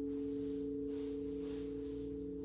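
Quartz crystal singing bowls ringing in two steady, overlapping pure tones, slowly fading.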